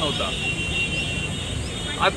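A brief pause in a man's outdoor speech, filled with steady street background noise: a low traffic-like rumble with a faint steady high whine, and a short bit of his voice near the start.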